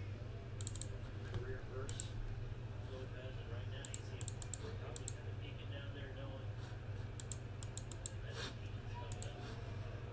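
Computer keyboard typing and mouse clicking in short irregular bursts, quiet, over a low steady hum.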